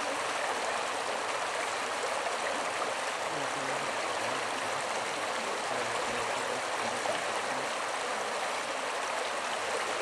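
Shallow creek water running over a gravel bed, a steady, even rushing with no splashes or breaks.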